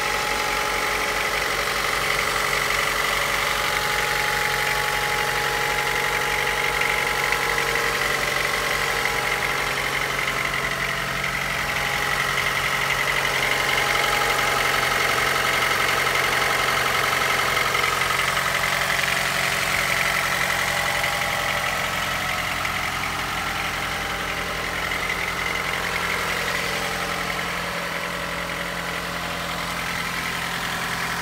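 Honda Accord's 1.8-litre four-cylinder engine idling steadily, heard close up with the hood open.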